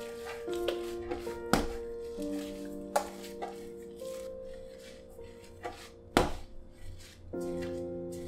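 Background music with held notes, over a few dull thumps of soft bread dough being kneaded and pressed down on a wooden board, the loudest about six seconds in.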